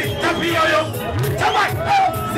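Live Zimdancehall music with a steady beat and bass line, with shouted voices and crowd noise over it.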